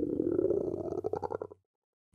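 A hungry stomach rumbling, a loud gurgle that breaks into a quick run of pops about a second in and stops suddenly after a second and a half.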